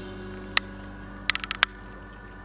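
Plastic side covers of a Sphero Ollie toy robot being pressed and snapped onto its body: one sharp click about half a second in, then a quick run of clicks a little past the middle. Soft background music plays underneath.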